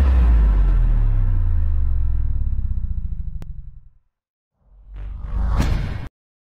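Logo-intro sound effects: a deep rumble fading out over about four seconds, then after a brief gap a rising whoosh that cuts off suddenly.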